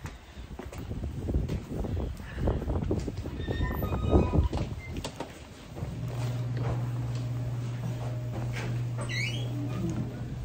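Rustling and knocking from a handheld phone being moved about. About six seconds in, a steady low hum starts and runs on, with a brief rising squeak near the end.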